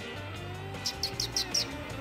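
A bird giving a quick run of about five short, high, falling chirps about a second in, over faint music in the background.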